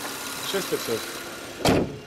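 Toyota Solara engine idling steadily with the hood open. A single loud thump comes near the end.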